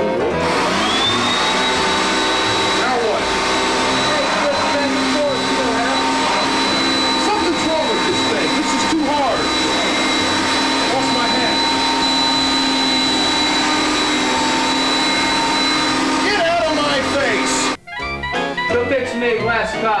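Upright vacuum cleaner switched on, its motor spinning up within the first second to a steady high whine that runs on for about sixteen seconds and cuts off suddenly near the end.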